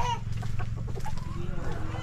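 Chickens clucking: a short pitched call right at the start, then fainter clucks near the end, over a steady low rumble.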